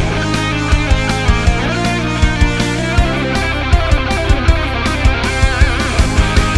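Distorted Ibanez electric guitar playing a progressive metal solo over a full band track with drums and bass. Near the end a held note wavers with vibrato while the drum hits come faster.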